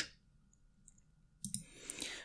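Near silence, then a few quick computer mouse clicks about a second and a half in.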